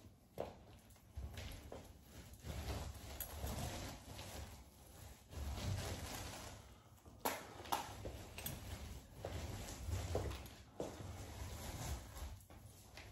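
Paint roller loaded with joint compound being worked up and down a textured wall on an extension pole: repeated rolling strokes, each about a second long, with a few sharp clicks about seven seconds in.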